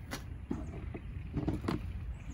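Tools being handled on a cluttered worktable, a claw hammer set down and a tape measure picked up: a few light knocks and clatters, over a steady low rumble.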